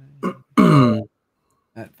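A man clears his throat once, loudly, just after a short spoken word, with the pitch of the rasp dropping as it goes.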